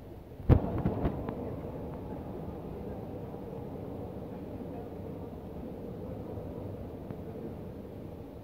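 A sharp knock about half a second in, followed by the steady hum and rumble of a running escalator.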